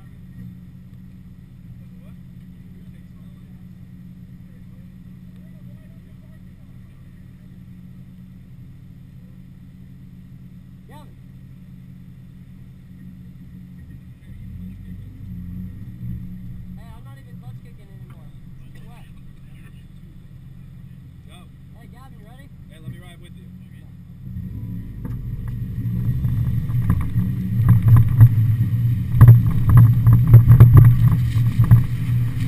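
Mazda Miata's stock 1.6-litre four-cylinder engine idling steadily, with a brief swell about halfway through, then revving and growing much louder over the last several seconds as the car gets under way.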